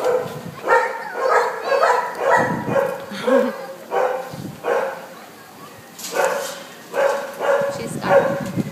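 Dogs barking over and over in short, pitched barks, roughly two a second, with a brief lull about five seconds in.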